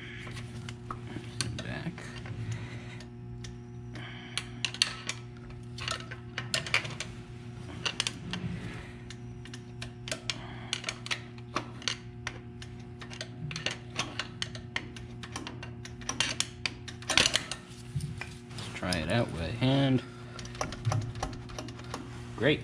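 Small metallic clicks and clacks as a stuck fuel-injector rack linkage on a 16-cylinder diesel engine is worked back and forth by hand, freeing up after a soak in penetrating oil. The clicks come irregularly throughout over a steady low hum.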